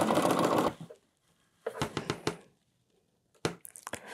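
Sewing machine stitching at speed during free-motion thread painting, stopping less than a second in. A few light clicks and taps follow in two short clusters.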